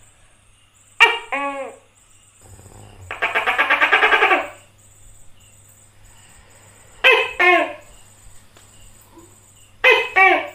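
Tokay gecko calling: a loud two-syllable 'to-kay' about a second in, a rapid rattling call from about three to four and a half seconds, then two more two-syllable calls, one near seven seconds and one at the end.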